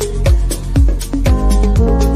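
Electronic dance music from a DJ mix: a steady four-on-the-floor kick drum about two beats a second, with hi-hats and sustained synth tones that shift to new notes a little past the middle.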